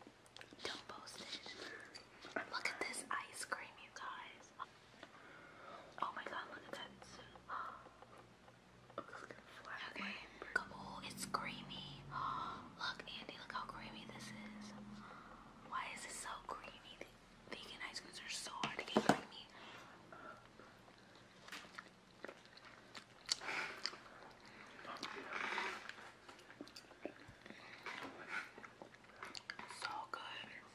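Whispering and quiet talk, with metal spoons clicking and scraping in a pint tub and soft chewing.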